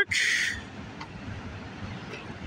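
Freight train of empty autorack cars rolling past, a steady low rumble, with a short hiss right at the start.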